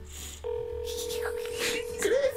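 Phone ringback tone from a smartphone's speaker: one steady ring starts about half a second in and holds for about a second and a half, as the outgoing call rings unanswered.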